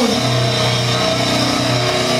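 Live death metal band playing at full volume: heavily distorted guitars and bass holding a steady drone, with drums underneath.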